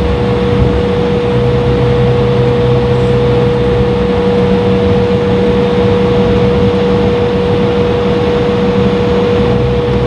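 Cabin noise of an Embraer E-175 taxiing on its GE CF34 turbofans at idle: a steady rumble and hum with a constant mid-pitched whine. A lower drone fades out about four seconds in and comes back near the end.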